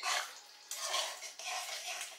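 Quiet, irregular clatter and scraping of a spoon or utensils against cookware, as food is stirred or handled at the counter.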